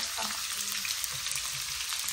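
Sliced onions and green chillies sizzling in hot oil in a frying pan, a steady hiss.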